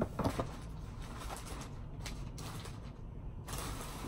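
Scattered rustles and light knocks of objects being handled and moved about.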